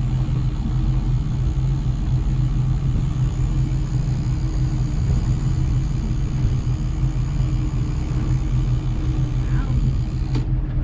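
Boat engine running steadily while trolling, a low even drone with water and wind hiss over it.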